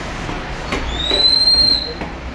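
A single high whistle note, about a second long, rising slightly in pitch and starting a little under a second in; a short sharp click comes just before it.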